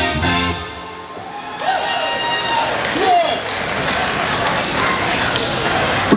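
The last notes of a live rock band's song die away, then an audience applauds and cheers, with a few shouted whoops, from about a second and a half in.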